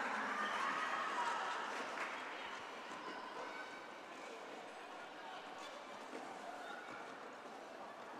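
Sports hall crowd noise during a roller derby jam: a steady murmur of spectators and skaters on the track that gradually grows quieter.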